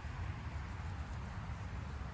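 Low, uneven outdoor background rumble with a faint hiss, with no distinct sound standing out.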